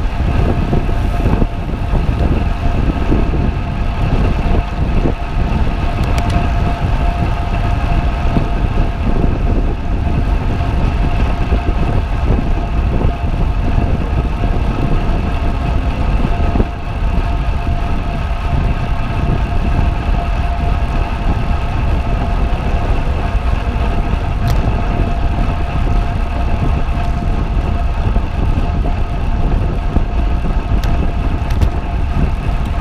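Steady rush of wind buffeting a bicycle-mounted action camera's microphone at about 40 km/h, heavy and rumbling, with a steady whine over it and a brief lull about 17 seconds in.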